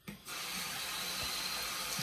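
A water tap running steadily into a sink, turned on about a quarter second in.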